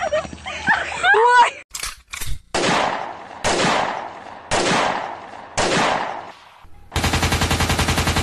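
Gunshot sound effects: four single shots about a second apart, each trailing off, then a rapid machine-gun burst of about a second and a half near the end, after a short stretch of voices at the start.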